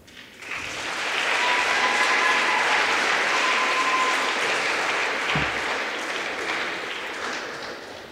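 An audience in a sports hall applauds as the routine's music stops. The applause builds within a second or so, holds, then slowly dies away. A dull thump comes about five seconds in.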